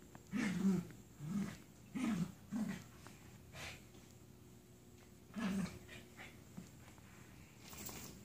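Two dogs, an Icelandic Sheepdog puppy and a bichon-poodle mix, play-wrestling, with a series of short low grumbling vocalisations, about six of them, the loudest about half a second in and the last around five and a half seconds.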